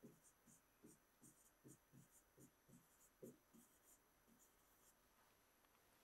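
Very faint, quick taps and strokes of a pen on an interactive whiteboard as a row of digits is written, about three a second, stopping a little past halfway.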